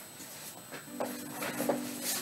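Faint footsteps and shuffling as a man walks back across a small room, a few light knocks spread through the second half, with a faint low steady hum under them.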